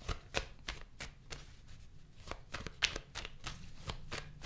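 A deck of tarot cards shuffled by hand, overhand between the palms: a quiet run of quick, irregular card flicks and slaps, several a second.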